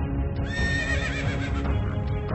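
A horse whinnies once over background music, a high call that starts about half a second in, wavers, and falls away over about a second.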